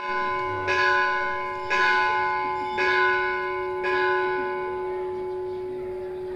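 A large metal temple bell struck about five times, roughly once a second, its ring carrying on between strokes. The strokes stop near four seconds in and the ringing slowly fades.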